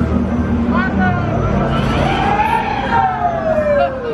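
Riders on a swinging pendulum fairground ride screaming, several long cries that rise and fall in pitch and overlap, the longest about two seconds in, over a steady low drone.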